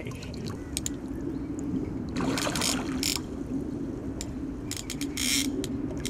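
Fly reel's click-and-pawl drag buzzing steadily as a hooked carp pulls line off against it, with scattered clicks and a few short noisy bursts of splashing or rustling.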